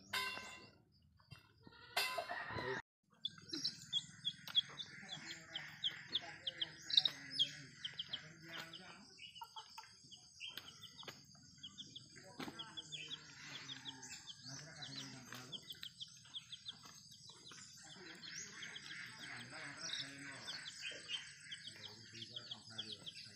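Domestic chickens: chicks peeping in many short, rapidly repeated high chirps, mixed with hens clucking. A short burst of noise comes about two seconds in, before the chirping starts.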